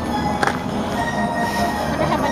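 Background music with steady held notes, and a single sharp click about half a second in.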